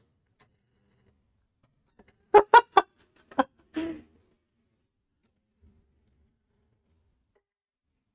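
Bean-to-cup coffee machine sounding its ready signal: a quick run of three short tones about two and a half seconds in, then two more shortly after, telling that the machine has heated and rinsed and is ready to brew.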